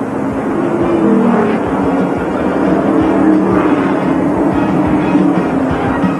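Television race-broadcast music, held notes with a beat, mixed over the noise of stock-car engines.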